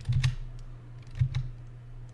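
Computer keyboard keystrokes: a few quick taps just after the start and another short group a little over a second in.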